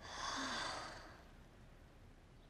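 A woman's sigh: one long breathy exhale that swells and fades out within about a second.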